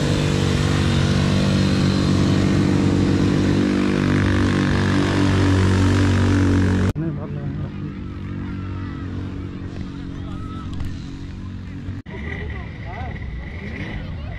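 Quad bike (ATV) engines running loud and close for about seven seconds, then stopping abruptly. After that, quieter open-air background with faint distant voices.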